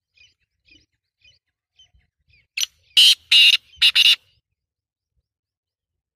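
A francolin (teetar) calling: a few faint chirps about every half second, then a loud, harsh run of four notes about two and a half seconds in.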